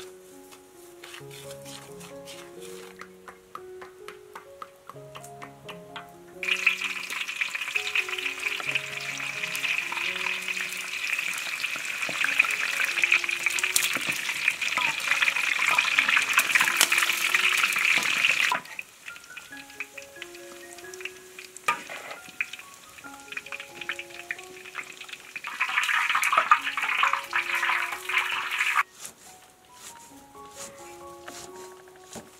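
Pieces of fish frying in hot oil in a wok: a loud, steady sizzle that starts suddenly about six seconds in and cuts off about eighteen seconds in, with a shorter burst of sizzling near the end.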